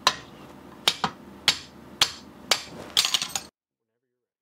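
A series of sharp knocks, about two a second with a quick cluster near the end, as the stuck .50 BMG cartridge case is hammered out of the chamber of a Barrett M82A1's split barrel.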